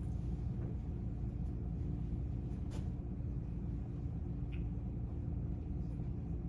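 Steady low rumble of room background noise with a faint steady hum, and a single light click about three seconds in.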